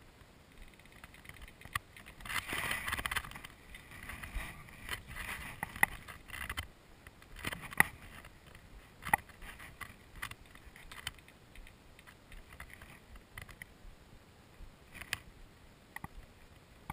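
Rustling and scattered sharp clicks and knocks close to the microphone. The loudest is a burst of rustling about two to three seconds in; later come single clicks. It is handling noise from the camera being shifted in long grass.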